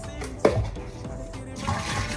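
Background music with a paper fast-food drink cup being handled: a sharp knock about half a second in, then a short rushing noise near the end as the plastic lid and straw come off.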